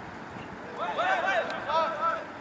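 Voices shouting across the field during open play, starting a little under a second in, over a quiet outdoor background.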